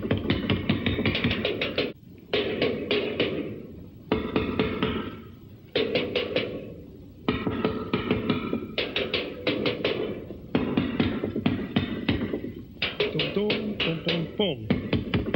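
Drum kit (bass drum and tom-toms) played with sticks in fast runs of strokes. The runs come in bursts of a couple of seconds, broken by brief pauses.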